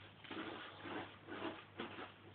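Faint scuffing of a flat-headed floor broom rubbed back and forth against a cat on a wooden floor: four soft strokes about half a second apart.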